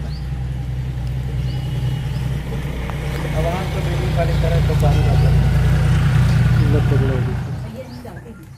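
A motor engine running steadily with a low drone, growing louder in the middle and fading away near the end.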